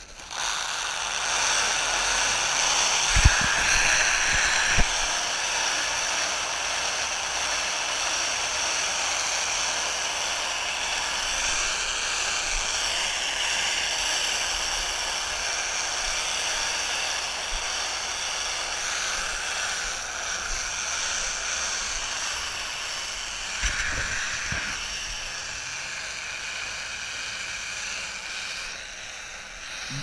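Round-bale wrapper running, turning a hay bale as the stretch film unrolls onto it: a steady mechanical whir and rush, with a few knocks about three to five seconds in and again near the twenty-four second mark.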